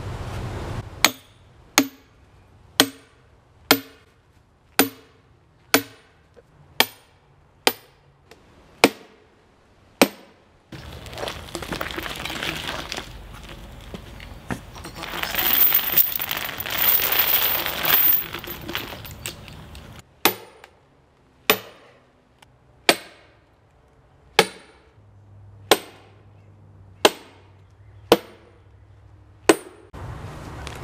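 A hammer driving a wedge into a log end to split it by hand: sharp ringing metallic clinks, about ten strikes at roughly one a second. A stretch of louder scraping noise follows in the middle, then about eight more strikes at a slightly slower pace.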